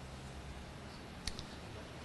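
Quiet room tone with a low steady hum, broken a little past halfway by two quick sharp clicks in close succession.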